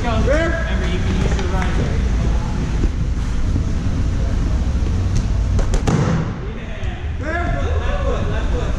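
Busy ninja-gym ambience: voices calling out in the first second or so and again near the end, over a steady low rumble from the moving handheld camera, with a few sharp knocks and thuds around five to six seconds in.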